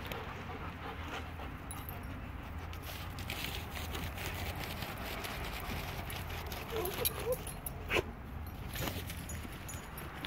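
German Shepherds moving about close to the phone, with soft scuffling and scattered clicks over a steady outdoor rumble, and a brief dog whimper about seven seconds in.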